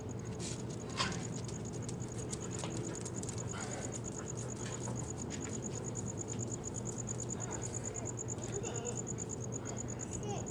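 Rapid, evenly pulsed high-pitched chirping of an insect, continuing throughout, over a steady low hum. A single sharp clink of the loaded barbell comes about a second in, as it is lifted off the concrete.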